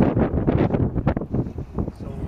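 Wind buffeting the camera microphone: a loud, gusting low rumble.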